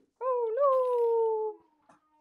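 A high falsetto voice wailing "Oh nooo!" in imitation of Mr. Bill's cry: a short first syllable, then a long held note that slowly sinks in pitch.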